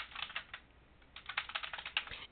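Typing on a computer keyboard: a few keystrokes, a pause of about half a second, then a quicker run of keys.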